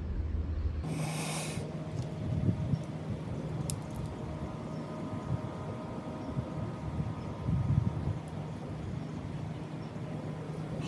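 A person blowing repeated puffs of breath into a fist of tightly packed dry leaves to feed a smouldering ember and drive it deeper. A faint steady hum runs underneath.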